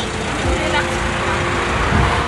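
Steady outdoor street noise, an even rushing hiss with a low steady hum.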